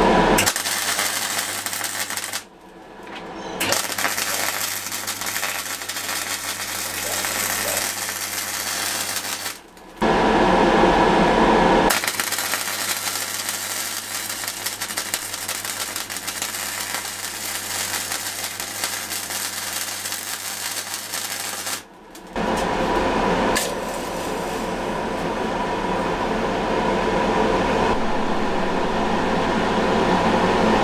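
MIG welder arc crackling and sizzling against a steel tube, in three runs of about two, six and ten seconds with short breaks, over a low electrical hum. Between the later runs and over the last several seconds, a steadier noise with a constant mid tone takes its place.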